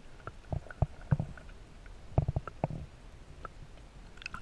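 Muffled underwater noise heard through a GoPro's waterproof housing: irregular low knocks and clicks, the loudest about a second in and just after two seconds.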